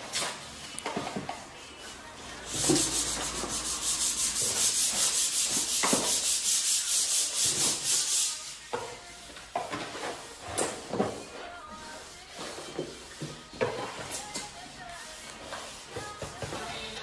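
A plaster wall being sanded by hand with a sanding block, a loud rasping of quick, even back-and-forth strokes for about six seconds from a few seconds in. Scattered knocks and scrapes come before and after it.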